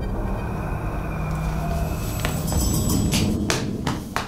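Film soundtrack: a droning electronic music bed with a low rumble, and a few sharp clicks or hits in the last two seconds.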